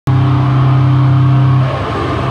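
Live death-grind band's heavily distorted, amplified guitar and bass holding one low droning chord. It is loud, cuts in abruptly and holds steady, then shifts near the end.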